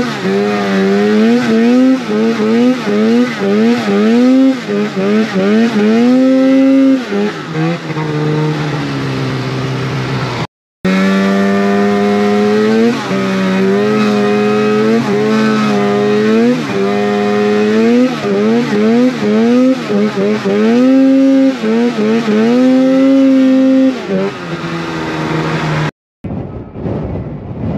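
Snowmobile engine revving up and down over and over as the throttle is worked, its pitch rising and falling about once a second, with a stretch of steadier, lower running about eight seconds in. The sound cuts out briefly twice.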